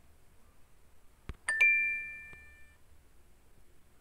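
A quiz game's answer chime: a click, then two quick rising notes that ring and fade over about a second, the sound the game makes as an answer is scored correct.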